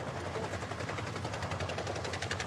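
Armoured military vehicle on the move, its engine rumbling under a rapid, even clatter that grows more distinct in the second half.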